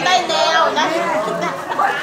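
A woman speaking Thai to a seated group, with chatter from several other voices overlapping hers.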